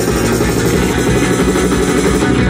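Rock band playing an instrumental passage live: electric guitar, bass guitar and drum kit with cymbals, loud and dense.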